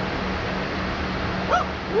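The 2008 Chrysler Sebring's 2.4-litre four-cylinder engine idling with a steady hum while the air-conditioning compressor runs and draws in refrigerant through the low-pressure port. About one and a half seconds in there is a short, high, rising-and-falling cry.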